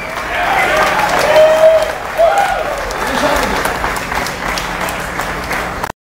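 Concert audience applauding, with voices calling out over the clapping; the sound cuts off abruptly just before the end.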